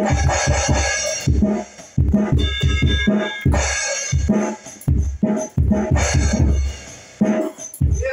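Drum-led music with a steady beat: heavy bass drum hits come several times a second under a cymbal hiss. A short held chord sounds about two and a half seconds in.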